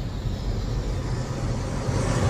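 Cinematic intro sound design: a deep, steady low drone with a dense rushing whoosh over it, building toward a swell at the end.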